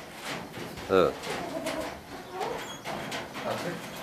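Birds in a coop cooing quietly, a few low calls.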